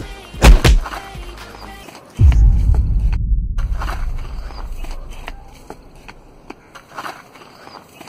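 Dubbed fight sound effects over music: two sharp hits about half a second in, then a sudden deep boom about two seconds in that fades away over the next few seconds.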